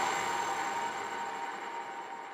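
Breakdown in a psytrance track: the kick drum drops out, leaving a hissing synthesizer noise wash that fades steadily.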